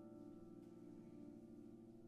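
Piano playing very softly: a chord of several notes, struck just before, held and slowly dying away.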